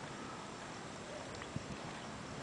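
Quiet outdoor background hiss with a soft tap about one and a half seconds in.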